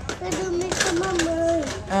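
A young child's high voice babbling without clear words, with brief crinkles and clicks from a boxed item being handled.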